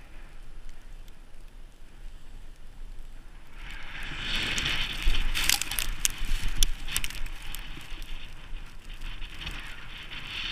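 Snowboard sliding and scraping over chopped-up, tracked snow, a crackly hiss that grows louder about four seconds in, with a run of sharp crackles and knocks in the middle before it eases off.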